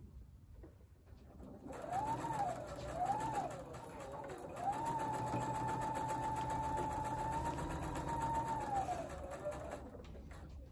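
Electric sewing machine stitching a seam. There are two short bursts, then a steady run of about four seconds, and the motor's whine rises as it speeds up and falls as it slows to a stop near the end.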